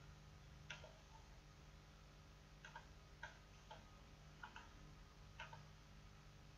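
Faint computer mouse clicks, about seven scattered across a few seconds, some in quick pairs, over a low steady hum.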